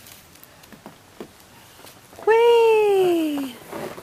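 A person's voice: one loud, drawn-out wordless exclamation that starts a little past two seconds in and slides steadily down in pitch for about a second, after a quiet stretch.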